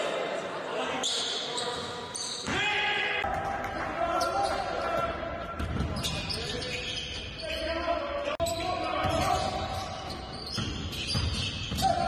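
Game sounds in a gym: a basketball bouncing on the hardwood court, with players' voices echoing in the large hall.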